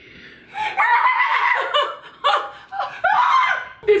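Women laughing hard, in several bursts that begin about half a second in.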